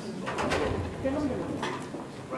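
Hushed voices of a small group murmuring and whispering, with a couple of brief soft hisses.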